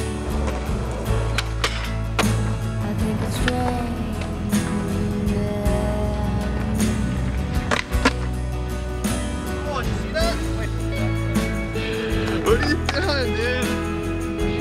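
Skateboard sounds on concrete: several sharp clacks of boards popping and landing, with rolling in between, over music with a steady bass line.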